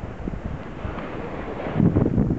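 Wind buffeting the microphone, a steady rushing noise that swells near the end.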